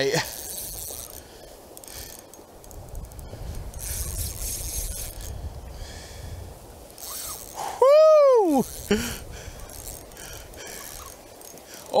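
Steady rush of flowing channel water with a low rumble of wind on the microphone, and a man letting out one whooping 'woo' about two-thirds of the way through.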